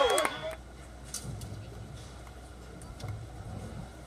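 A spectator's cheering shout ends about half a second in, leaving quiet open-air ambience with a faint low rumble.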